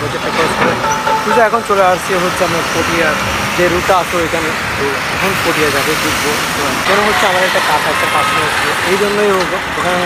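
A man talking, with a steady wash of road traffic noise behind his voice.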